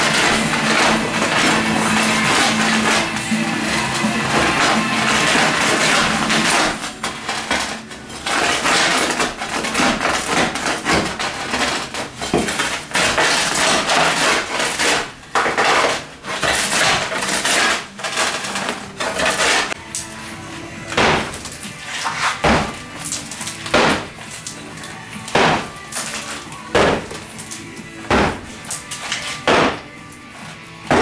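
Old concrete countertop mortar bed and tile being broken up with a chisel: nearly continuous chipping for the first several seconds, then scattered cracks. In the last third come separate sharp strikes about once a second as rubble breaks away. Background music plays underneath.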